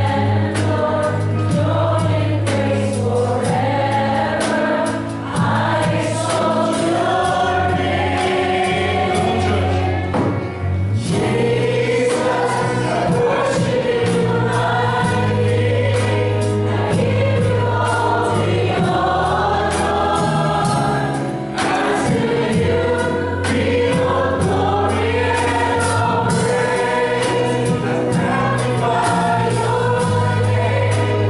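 A live worship band of guitars, keyboard, bass guitar and drum kit playing a gospel song while several voices sing together, with short breaks between phrases.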